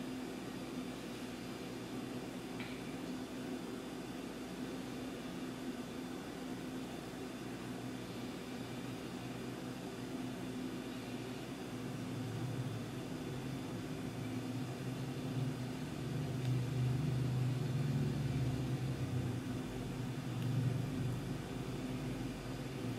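Faint steady hum over low room noise, with a deeper rumble that swells about halfway through and eases near the end.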